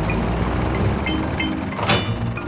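Cartoon tractor engine running with a steady low rumble under light background music. A short clunk comes near the end as the trailer hitches on.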